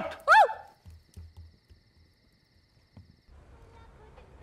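A shouted "out!" ends a quarrel, followed by a couple of seconds of near quiet with a few soft knocks. About three seconds in, faint outdoor night ambience begins with a low steady hum and distant wavering animal calls.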